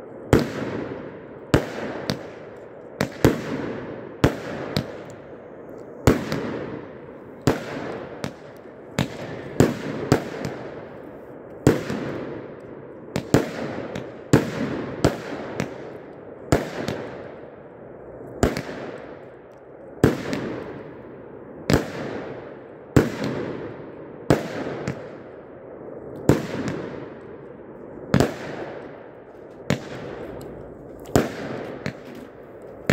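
A 100-shot consumer firework cake firing shot after shot at a steady pace, roughly one every second and a half, with some shots in quick pairs. Each shot is a sharp report followed by a fading rush of noise.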